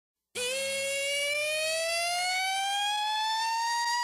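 A single siren-like tone rising slowly and steadily in pitch, starting about a third of a second in, with a slight wobble toward the end: the lead-in riser at the start of a hip-hop track, before the beat comes in.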